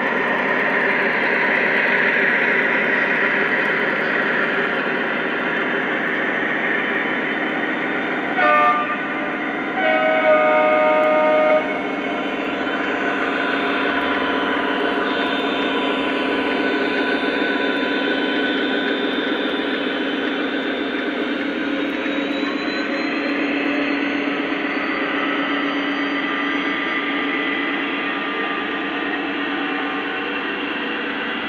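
Lionel model diesel locomotives, led by a Union Pacific ES44AC, running past with a steady rumble of wheels on the track and the engine sound from their onboard sound systems. About eight seconds in the model's horn gives a short toot, then a longer blast of about a second and a half.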